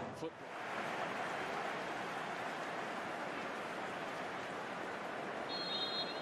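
Steady stadium crowd noise, broadcast over a match played before empty stands, so it is the added crowd audio. Near the end a referee's whistle blows briefly for kick-off.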